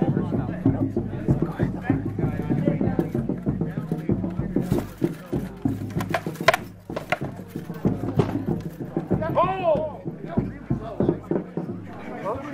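Armoured combat: weapons striking shields and armour in a quick run of sharp knocks and clacks, densest in the middle, with voices and a shout near the end.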